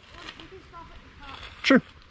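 Speech only: a faint voice through most of the stretch, then a close voice saying "sure" near the end.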